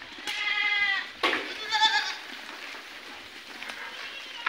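Young Sojat goats bleating twice in quick succession: a first bleat falling slightly in pitch, then a louder, quavering bleat about a second in.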